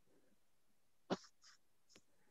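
Near silence over a video call, broken about a second in by one brief click, followed by two fainter short sounds.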